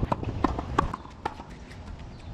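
A quick run of sharp taps on a hard tennis court, about three a second, dying away after about a second.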